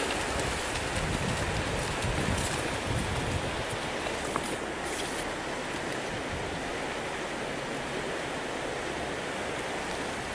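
Steady rushing of a river, with heavier splashing in the first few seconds as a brown bear runs through the shallows.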